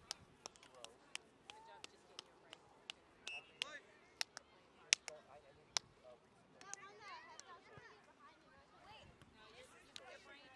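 Faint, distant voices of players and spectators carrying across an open field, with scattered sharp clicks and taps throughout, the loudest about five seconds in.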